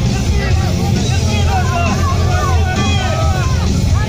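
Spectators shouting and yelling over loud music from loudspeakers, with a heavy steady low rumble underneath.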